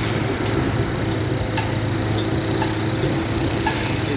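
Steady low drone of heavy construction-machinery engines running, with a couple of faint clicks.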